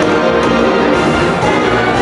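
Foxtrot dance music playing steadily, an orchestral arrangement of sustained notes.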